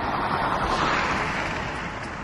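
An electric classic Mini passing by at speed: a rush of tyre and wind noise with no engine note. The noise swells to a peak about a second in and then fades.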